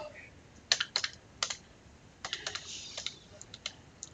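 Keys of a computer keyboard being typed: a dozen or so separate, irregular keystrokes, with a quicker run a little after two seconds in.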